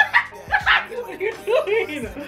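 German Shepherd barking several short times at close range, the loudest bark right at the start, as it pushes its nose at someone under a blanket.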